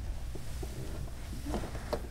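A framed photograph handled and set down, with a light tick near the end as it is placed, over a steady low room hum.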